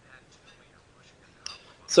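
A quiet pause in a man's talk, with only faint whispery voice sounds. He starts speaking again at the very end.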